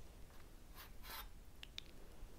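Faint rustling and a few small light clicks as a white ceramic mug is picked up and handled.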